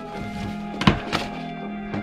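Background music with a sharp knock just before a second in and a lighter one shortly after, as a stack of paper exercise books is pulled out and handled.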